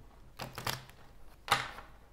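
Tarot deck being shuffled by hand, the cards clicking against each other: a quick run of clicks about half a second in and a louder slap about a second and a half in.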